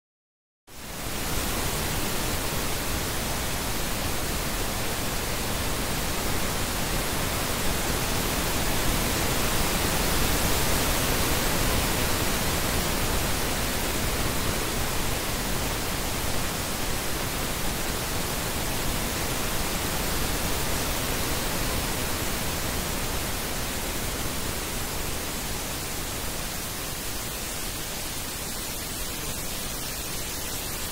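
Pink noise test signal from a Burosch AVEC audio-video check pattern: a steady, even hiss that switches on abruptly under a second in, after digital silence. It is a 5.1 loudspeaker-channel check signal at −6 dB.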